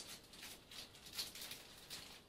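Faint rustling and a few light ticks of a small bag being opened and handled.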